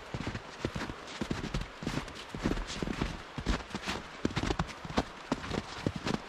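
Footsteps crunching through fresh snow at a brisk walk, several irregular crunches a second.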